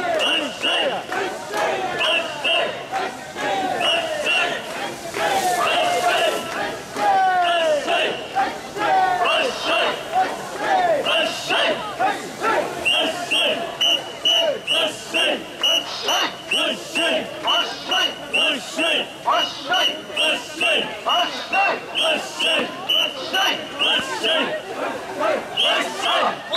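A crowd of mikoshi carriers, many of them children, chanting "wasshoi" in unison as they shoulder the portable shrine, with a regular high-pitched beat about twice a second that settles into a steady rhythm from about halfway.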